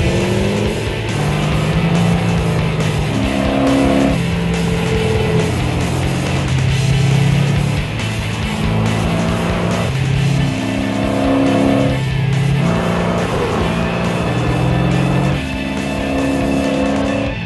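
Background music with held chords changing about every second, laid over a car being driven hard: the 392 Hemi V8 of a hot rod coupe running, with tyre noise.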